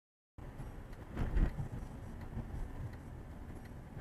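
Car driving on a wet road heard from inside the cabin: a steady low rumble of engine and tyre noise, with a louder swell about a second in. It opens with a split second of dead silence.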